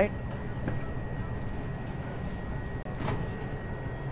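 Steady low electrical hum of convenience-store appliances, with a faint high whine over it and a short click about three seconds in.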